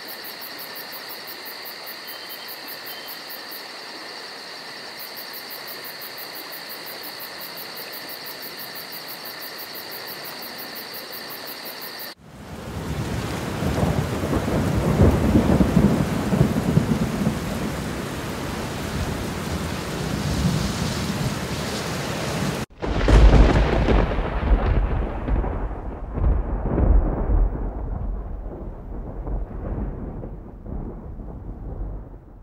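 A night insect chorus of fast, even high chirps over a steady hiss cuts off abruptly about twelve seconds in to heavy rain and rolling thunder. After a momentary break a louder thunderclap comes in, its deep rumble rolling on while the hiss of rain fades away toward the end.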